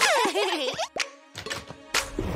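Cartoon sound effects with children's music: a quick run of bouncy, sliding pitch glides in the first second, then a quieter gap broken by a short pop about a second in and another near the end.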